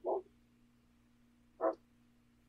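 Two brief, quiet voiced sounds, one right at the start and one near the end, over a faint steady hum.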